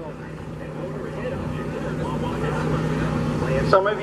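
Small single-cylinder mini bike engine running as the bike rides closer, steadily getting louder.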